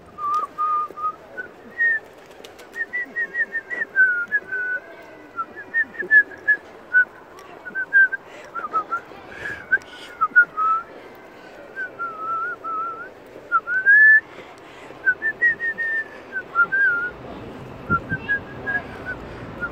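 A person whistling a tune close to the microphone: a continuous run of short, wavering notes that slide up and down, with a few brief breaks.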